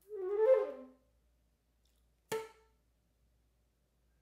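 Silver concert flute playing a brief phrase that falls to a low note. After a second of silence comes one short, sharply attacked note, then silence again.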